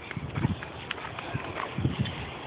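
Footsteps on a rubber playground surface: a few irregular soft thuds as people walk.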